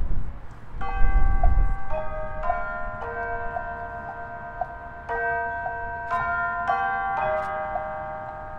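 Marching band front ensemble playing a slow passage of ringing, bell-like mallet percussion: sustained notes that overlap, a new note struck about every half-second to second. A low rumble sits under the first two seconds.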